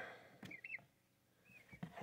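Faint, short high peeps from a five-week-old Ayam Cemani chick, a few about half a second in and one more past the middle, with a few light taps.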